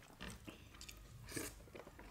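Faint, close mouth sounds of a person chewing a mouthful of rice and curry eaten by hand, a series of short soft wet sounds with one louder one about one and a half seconds in.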